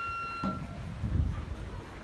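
Gagaku court music in a sparse passage: a thin held wind note dies away, and two soft low strokes sound on the hanging drum.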